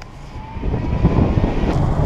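Cargo van driving, heard from inside the cab: engine and road noise swelling over the first second, with a faint rising whine.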